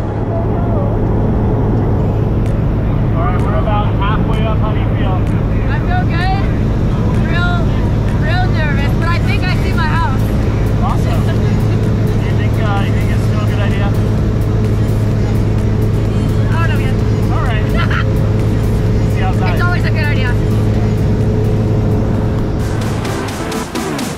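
Single-engine propeller plane's engine droning steadily, heard from inside the cabin, with people's voices calling over it. Near the end the steady drone gives way to a different, rougher sound.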